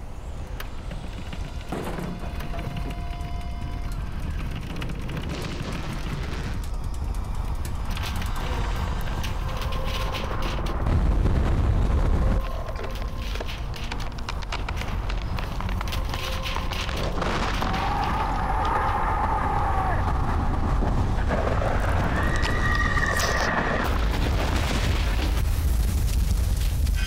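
Movie sound design of an approaching blast: a deep rumble that grows steadily louder, with a sharp surge about eleven seconds in, mixed with tones of background music.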